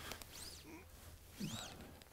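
A bird calling faintly: two short, high, arching chirps about a second apart.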